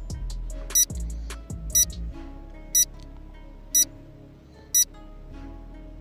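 Countdown timer sound effect giving five short, high beeps, one each second, over soft background music.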